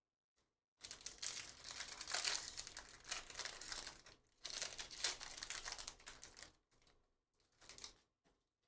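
Foil wrapper of a Panini Prizm trading-card pack crinkling as it is torn open by hand. It comes in two spells of about three and two seconds with a brief break between, and a short rustle near the end.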